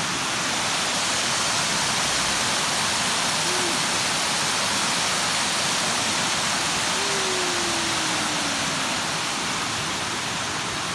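Small waterfall cascading over rock ledges into a shallow creek: a steady rush of falling and running water. A faint, low tone slowly falls in pitch about seven seconds in.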